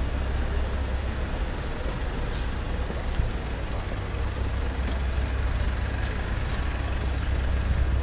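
Road traffic passing along a town street: a steady low rumble of engines and tyres, with a brief high hiss about two and a half seconds in.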